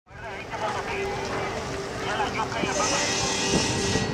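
Street ambience: vehicle traffic with people's voices talking in the background, and a louder hiss in the second half.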